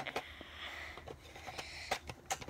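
Plastic toy blaster being handled: a sharp click at the start, a second click just after, a soft rubbing of a hand on the plastic scope, and another click near the end.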